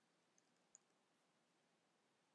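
Near silence: faint room hiss with two small, sharp clicks less than half a second apart, the second louder.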